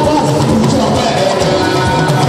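Live band music playing loudly, with electric guitar and drums.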